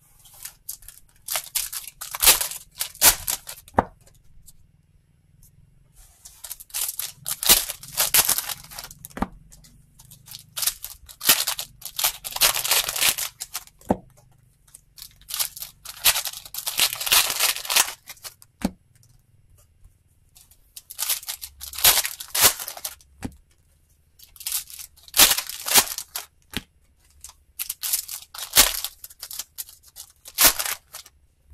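Foil trading-card pack wrappers being torn open and crinkled by hand, in crackling bursts of a second or two that come every few seconds.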